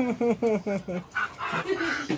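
A dog giving a quick run of about six short yelping cries, each falling in pitch, while two dogs play-fight. The yelps are followed by about a second of scuffling noise.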